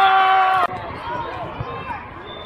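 Several young voices shouting together in one loud, long held call that cuts off abruptly just over half a second in. It is followed by quieter gym chatter with a soft thump near the middle.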